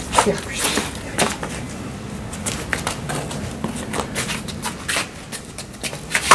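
Scattered light scuffs and taps of two people moving through a hand-to-hand self-defence technique: shoes shuffling on a stone patio and clothing and gloves rubbing and knocking, with no single loud impact.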